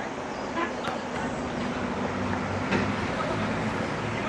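Open-air football pitch ambience: a steady wash of background noise with faint distant voices, and a low hum that comes in about a second and a half in.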